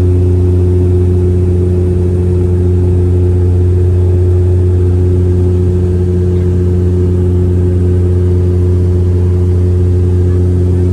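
Turboprop airliner's propellers and engines in flight, heard inside the cabin: a loud, steady low drone that holds one pitch.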